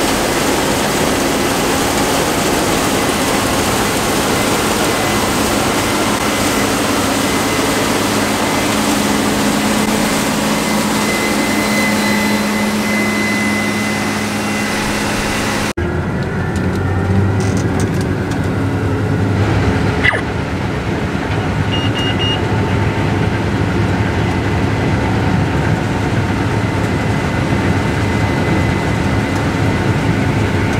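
Case IH combine harvesting edible beans, running steadily: a loud engine and machine drone heard outside as it passes. About halfway through the sound changes abruptly to the duller, lower engine hum heard inside the cab.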